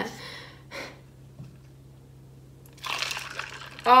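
Coffee poured from a ceramic mug into a plastic tumbler of milk and ice: a short splashing pour lasting about a second near the end. Before it there is a quiet stretch with a faint steady hum.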